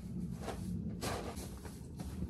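Faint footsteps and a couple of soft knocks as someone walks off and comes back carrying a hand tool, over a steady low rumble.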